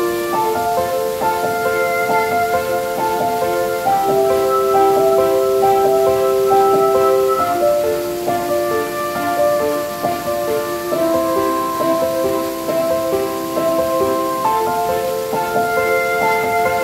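Calm piano music playing in slow, flowing arpeggios over a steady rush of falling water.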